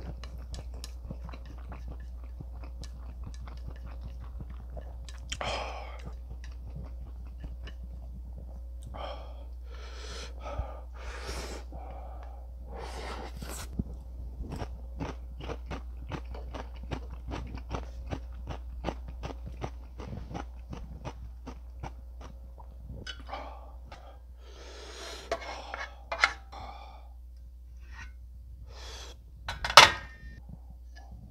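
Close-miked chewing and mouth sounds of someone eating stir-fried instant noodles, with a fast run of small wet clicks through the middle.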